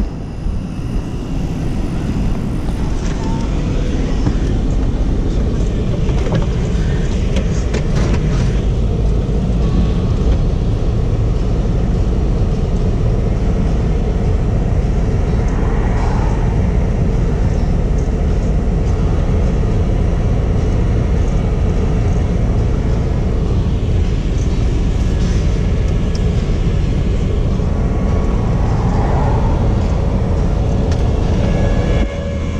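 A vehicle engine running steadily with a low rumble, heard from inside a car's cabin, with scattered clicks and knocks over the first ten seconds or so.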